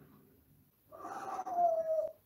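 African grey parrot giving one drawn-out, whining call that falls slightly in pitch, starting about a second in and lasting about a second.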